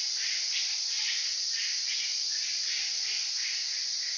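A chorus of insects: a loud, steady high-pitched buzz, with a softer chirping pulse repeating about twice a second beneath it.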